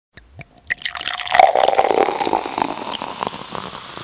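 Sound effect for an animated channel-logo intro: a few sharp clicks, then a loud hissing swell with a brief tone about a second and a half in, slowly fading.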